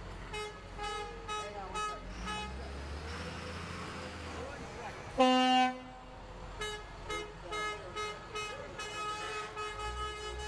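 A parade vehicle's horn gives one loud blast of about half a second, about halfway through. Around it a vehicle engine runs, and a run of short repeated musical notes plays before and after the blast.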